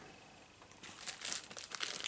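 A small clear plastic parts bag crinkling as it is handled, starting about a second in after a nearly quiet moment.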